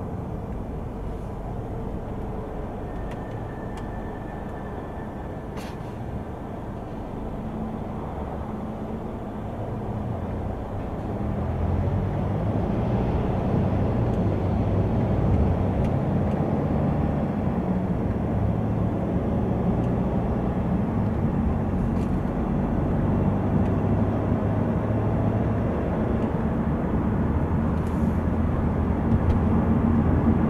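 Cabin sound of a 2015 Mercedes C220d BlueTec's 2.2-litre four-cylinder diesel and road noise while the car drives in traffic. It gets louder about ten to twelve seconds in as the car speeds up.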